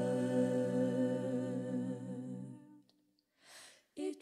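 A cappella vocal group holding a wordless sustained chord, with a low voice underneath, which fades away over the second half. After a moment of near silence comes a short soft hiss, a singer's intake of breath, just before the next phrase begins.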